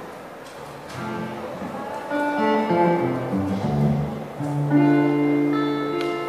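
Solo electric guitar played through an amplifier: plucked single notes begin about a second in, stepping through a melody, then fuller chords ring out from about four and a half seconds in.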